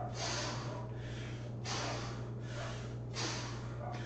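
A man breathing hard and forcefully through squats, a loud rushing breath about every one and a half seconds with quieter breaths between.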